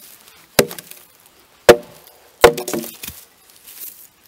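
Hatchet chopping into a short round of wood: three sharp strikes about a second apart, the third followed by a brief crackle as a thin board splits away.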